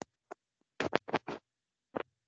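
Computer keyboard keystrokes as text is typed into a form field: a few scattered key clicks, then a quick run of four louder ones about a second in, with dead silence between them.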